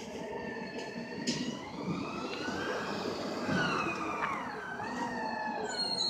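Curbtender G4 garbage truck working up the street: a pitched whine from its engine and hydraulics rises slowly in pitch, holds, then falls and wavers back up near the end.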